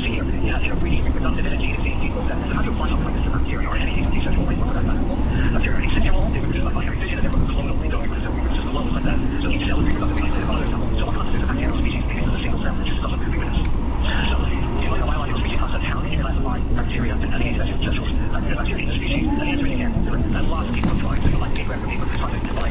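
Indistinct chatter of voices over a steady low rumble, with many small clicks and rustles throughout.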